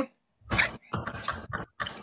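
Men laughing hard in breathy bursts, starting about half a second in.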